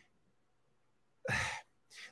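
A short, breathy sigh from a man into a microphone, lasting about a third of a second and coming a little past halfway through.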